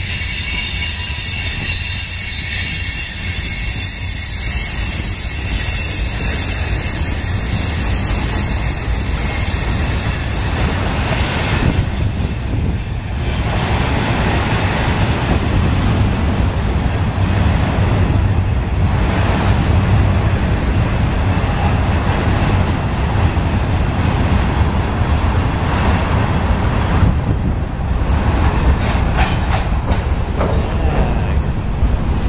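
Freight train cars rolling past, with wheels squealing in several high steady tones that fade out about eleven seconds in, leaving the steady rumble of wheels on the rails.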